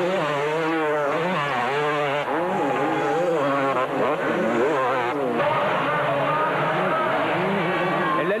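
250cc two-stroke motocross bikes racing, their engines revving up and down sharply again and again as riders work the throttle, with a steadier high-pitched run of revs in the second half.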